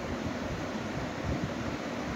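Steady background noise: an even hiss with an uneven low rumble, like a fan or air conditioner running in a small room.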